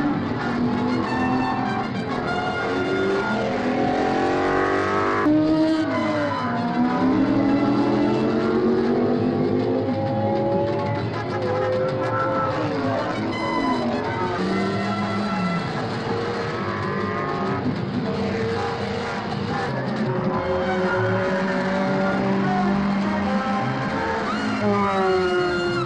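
Racing sport-prototype engines at full throttle as several cars pass, each engine note climbing in pitch for several seconds and dropping at the gear changes.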